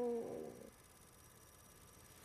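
A woman's long crying sob that ends less than a second in, followed by faint room tone.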